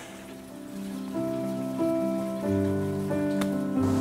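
Background music: slow, sustained chords whose notes change in steps, building gradually louder.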